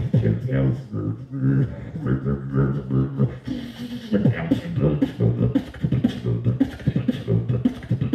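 A beatboxer performing into a handheld microphone over a PA: a fast, dense run of vocal kick, snare and hi-hat clicks over low pitched bass tones, with a drawn-out hiss about three and a half seconds in.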